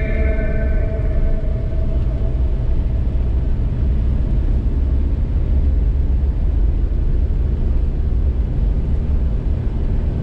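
Car driving slowly on a snow-packed road, heard from inside the cabin: a steady low rumble of engine and tyres. Music fades out in the first second or so.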